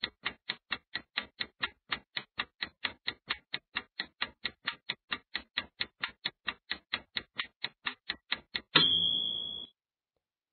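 Countdown-timer sound effect ticking evenly, about four to five sharp ticks a second, for the quiz's answer time. Near the end the ticking stops and a ringing tone sounds for about a second, fading out, marking that time is up.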